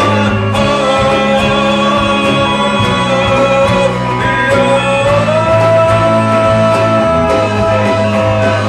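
Live band playing a country-tinged rock song with acoustic and electric guitars, fiddle, bass and drums; a long held note comes in about five seconds in.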